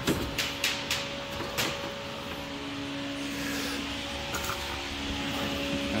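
Car radiator knocking and rattling against its mounts as it is wiggled and lifted out of the engine bay: a few sharp knocks in the first two seconds. A steady hum follows.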